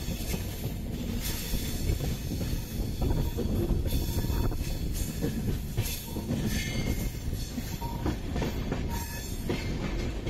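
Express train coaches running along the track, heard from an open coach doorway: a steady rumble and clatter of wheels on rails with rushing air, and a few brief high wheel squeals in the second half.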